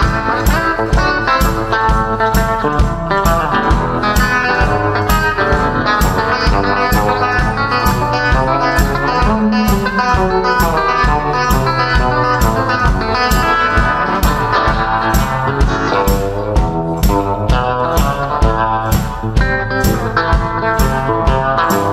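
Electric guitar playing an instrumental blues break with no vocals, over a steady, even beat.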